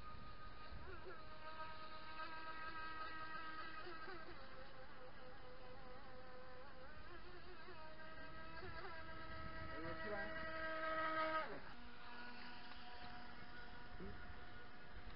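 Radio-controlled model boat's motor whining as it runs across the water, its pitch shifting up and down with throttle and turns. It grows louder near the end, then drops sharply in pitch and carries on at a lower, steady tone.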